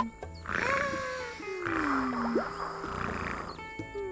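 A cartoon hippo character's wordless vocal sounds, sliding downward in pitch like sighing hums, over light background music. There is a spell of hissing noise in the middle.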